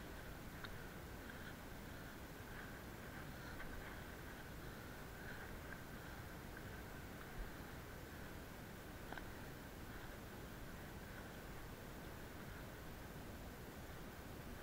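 Faint steady hiss with a few soft clicks and rustles: a hiker's footsteps climbing a steep grassy, rocky slope.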